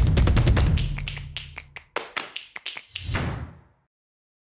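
Intro theme music fading out, followed by a quick irregular run of sharp taps and clicks and a final heavier thud that dies away.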